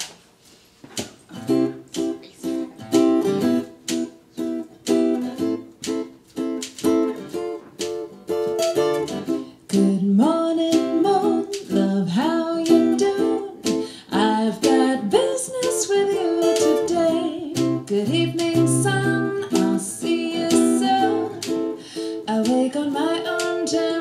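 Song intro: a manual typewriter's keys struck as percussion in a steady beat of sharp clicks over plucked-string chords. A woman's singing joins about ten seconds in.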